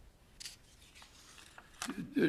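Faint room tone over a meeting's audio line, with a brief soft rustle about half a second in and a couple of sharp clicks near the end.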